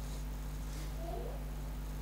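Quiet room tone with a steady low electrical hum. About a second in comes one brief, faint pitched sound that bends in pitch.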